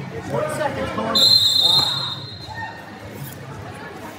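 A referee's whistle blown once: a single high, steady blast of about a second, starting about a second in, as the action on the mat is stopped. Shouting voices can be heard just before it, with quieter voices after.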